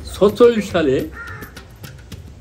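A crow cawing, over a man's voice and soft background music.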